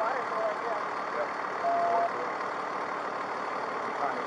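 Steady noise of idling vehicles and road traffic, with faint voices early on and a brief steady tone about halfway through.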